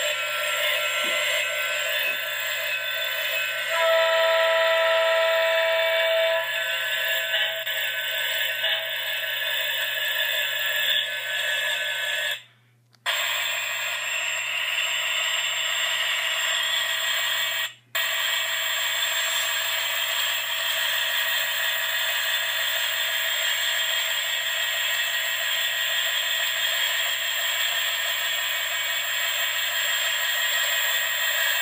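The soundtrack of a model railroad video played through a computer's small speakers, with no bass: a steady hissy running noise, with a buzzy horn-like tone held for about two and a half seconds about four seconds in. The sound drops out briefly twice past the middle.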